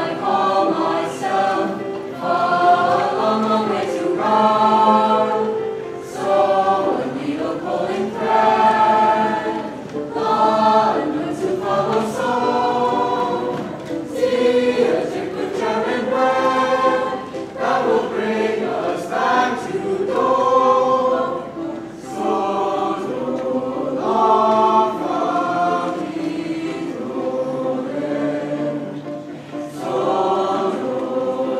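A large junior high school chorus singing together, many voices in phrases that rise and fall.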